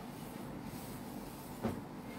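A steady low hum of room noise with one short, soft thump about one and a half seconds in.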